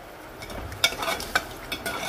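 A metal ladle stirring dal and water in a metal pot, knocking sharply against the pot several times from about a second in.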